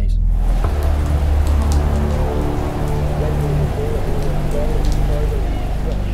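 Steady rain falling on a car's roof and windows, heard from inside the car, over a low steady drone.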